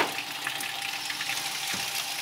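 Tap water running steadily into a stainless steel sink while food scraps are tipped and scraped out of a plastic bucket into it. A sharp knock right at the start and a dull thump a little before the end.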